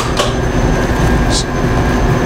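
Steady machinery hum: a low rumble with several constant tones running underneath. Two short, high hisses come in, one just after the start and one about a second and a half in.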